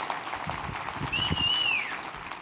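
Audience applauding, with one high whistle about a second in that holds its pitch and then slides down.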